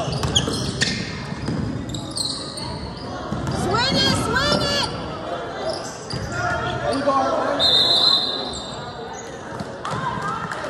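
Youth basketball game on a hardwood court: the ball bouncing on the floor, sneakers squeaking in a quick run of chirps about four seconds in, and players and onlookers calling out, all echoing in the gym.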